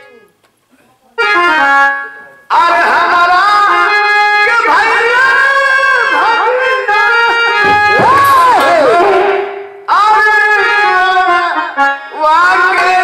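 Harmonium playing with a voice singing over it. After a near-silent first second there is a short falling run of notes, and the music comes in fully about two and a half seconds in, with a brief break near ten seconds.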